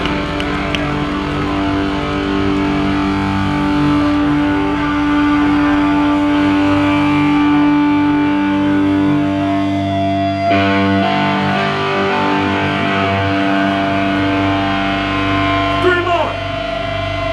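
Distorted electric guitars and bass through stage amps holding sustained, ringing chords, with the chord changing about ten and a half seconds in.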